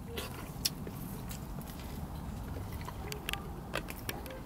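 A person chewing a bite of peach with the mouth closed, faint small clicks over a low steady background rumble.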